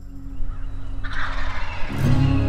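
Wild turkey tom gobbling: a rapid, rattling gobble that builds and is loudest about a second in.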